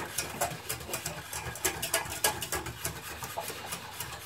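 A utensil stirring and scraping in a pot of sauce made from powder, in quick irregular strokes.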